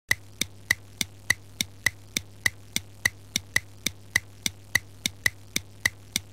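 Film-projector clicking sound effect for a countdown leader: sharp even ticks, about three and a half a second, over a faint steady low hum.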